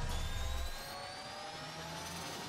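Sound-design riser in a logo intro: several tones climbing slowly in pitch together over a noisy whoosh. A low rumble under it drops away less than a second in.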